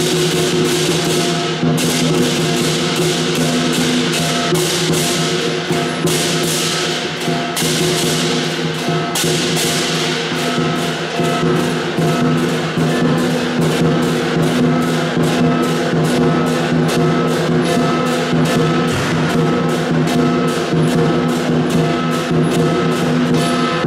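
Lion dance percussion band playing: a big drum beaten in a steady driving rhythm with crashing cymbals and a ringing gong, accompanying the lion's movements.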